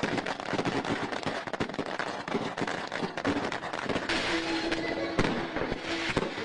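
Strings of firecrackers going off in a dense, continuous crackle of rapid pops.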